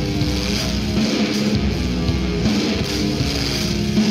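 Doom metal music: a slow, heavy electric guitar riff built on low notes that repeats steadily.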